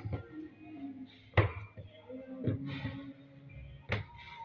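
Two sharp knocks of dough being handled on a wooden tabletop, the louder about a second and a half in and another near the end, with quieter handling noise between.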